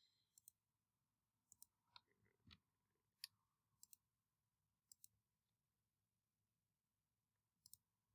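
Faint computer mouse clicks, some single and some in quick pairs, scattered over otherwise near silence; the loudest comes a little after three seconds in.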